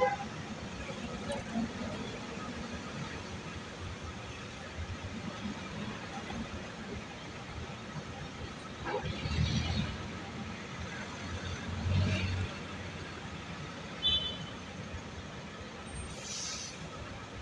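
City street traffic: a steady hum of vehicles, with two louder vehicles passing about nine and twelve seconds in and a short high beep near the end.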